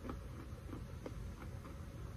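Roasted peanuts being chewed: a string of small, irregular crunches, several a second, over a low steady hum.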